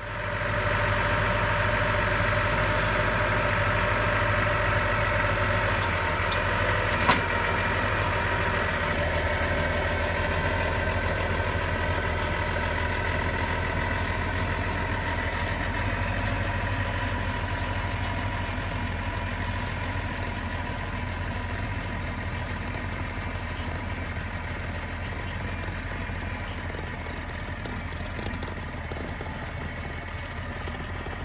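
Diesel engine of a New Holland farm tractor running steadily while it pulls a mobile center-pivot irrigation tower, growing gradually fainter as it moves off. A single sharp clank about seven seconds in.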